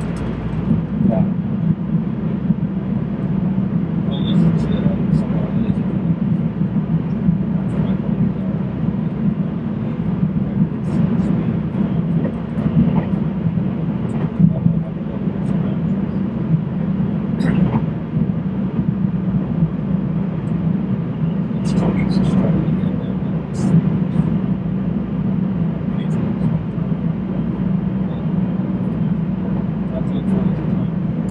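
Passenger train running, heard from inside the carriage: a steady low rumble with scattered light clicks and knocks, and people's voices in the background.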